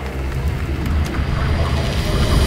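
A deep, steady low rumble with a few held tones above it, a dark drone that grows a little louder towards the end.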